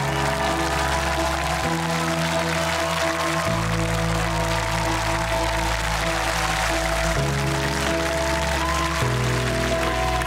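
Studio audience applauding over background music of sustained low chords that change every couple of seconds.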